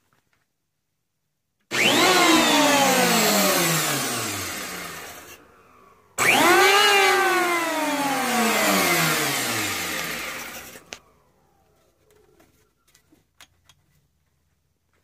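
Electric hand planer mounted as a jointer, its motor and cutterhead whine starting suddenly loud, then falling in pitch and fading as it winds down; this happens twice.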